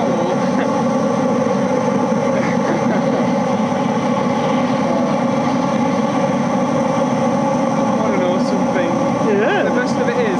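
Oil burner firing hard through a red-hot steel pipe, giving a steady rushing noise with a steady hum underneath.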